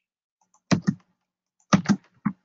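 Computer keyboard keystrokes: two quick taps, then a fast run of three about a second later.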